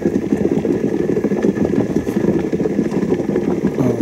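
Hot water bath on a stove bubbling just below the boil around a bucket of honey, a steady low rumbling simmer.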